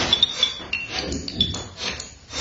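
Violin played in free improvisation: a quick scatter of short, high clinking tones with scratchy noise between them.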